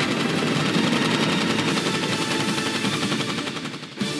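Machine gun firing one long, rapid burst of automatic fire that fades away near the end.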